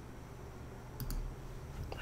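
Two quick clicks close together about a second in, over a faint steady low hum of room noise.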